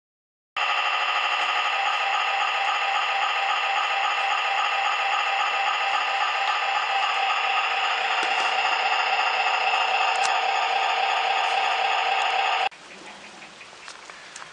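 Model-railway diesel sound module playing a small diesel engine's running sound, a steady, evenly chugging note. It is on test and not yet adjusted. It starts suddenly about half a second in and cuts off suddenly near the end, leaving a quieter hiss.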